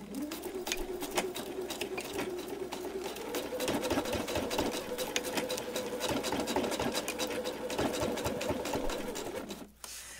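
Electric sewing machine running steadily, stitching a seam through thick, foam-padded fabric layers, with the rapid ticking of the needle over the motor hum. It starts at once, speeds up about three seconds in, and stops just before the end.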